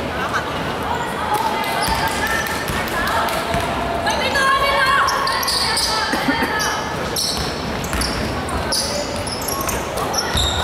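A basketball bouncing on a hardwood gym floor during play, with players' voices calling out and echoing in a large hall.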